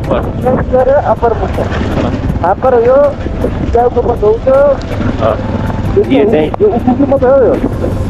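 A person's voice over the steady low rumble of a motorcycle engine, with wind on the microphone.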